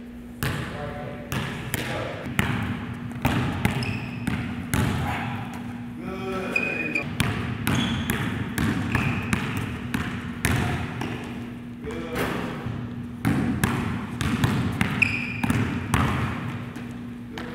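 A basketball being dribbled on a gym floor: a series of irregular bounces, with a few short high squeaks from sneakers on the floor.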